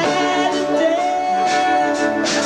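Live rock song: a man's voice holds one long sung note, sliding up slightly about a second in, over strummed acoustic guitar and the band.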